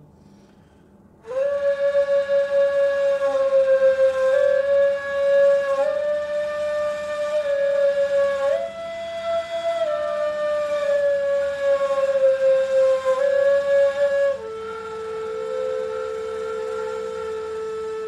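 Two neys (Turkish end-blown reed flutes) played together in a slow line of long held notes, moving up and down by small steps. The playing starts about a second in and settles on a lower held note near the end.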